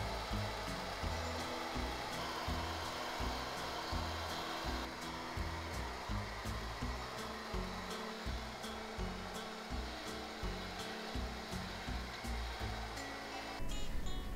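Handheld hair dryer blowing steadily while hair is brushed and dried into shape. It cuts off near the end, with background music underneath throughout.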